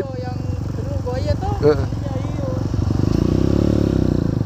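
Trail motorcycle engine running under way, its pulse growing louder about three seconds in as the throttle opens. A faint voice is heard over it in the first couple of seconds.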